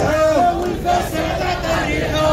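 Street protesters chanting a slogan in rhythm, a woman's voice shouting the lead above the marching crowd.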